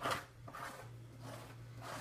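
A small spatula scraping tinted modeling paste across a plastic stencil on paper: a run of short rasping strokes, one after another.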